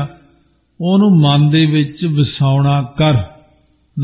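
A man's voice intoning words in a chant-like recitation, with long held pitches, after a brief pause at the start.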